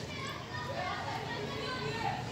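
Children's voices in the background, talking and playing.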